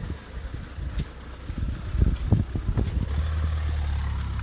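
A car approaching, its low engine hum growing steadily louder over the last second, after a few irregular low thumps.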